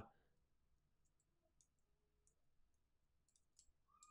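Near silence: room tone with a scattering of very faint, short clicks.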